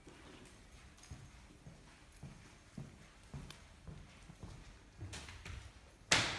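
String mop worked over a wet tiled floor, with faint, regular knocks about twice a second.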